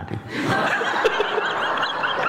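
An audience laughing together, breaking out about half a second in and carrying on steadily, with the lecturer laughing along.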